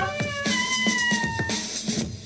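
Soprano saxophone playing a short note, then a long high note that sags slightly in pitch before ending about a second and a half in, in a wailing, cry-like tone.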